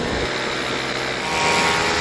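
Paramotor's two-stroke engine and propeller droning steadily in flight, heard close to the engine with wind noise over it.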